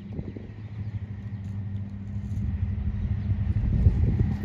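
A low, steady engine hum over a rumble, growing louder towards the end.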